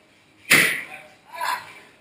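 Two sharp smacks about a second apart, the first the louder: strikes landing during boxing and taekwondo training.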